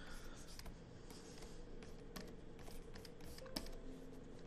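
Faint, irregular taps and light scratching of a stylus nib on a pen-display screen while drawing short strokes.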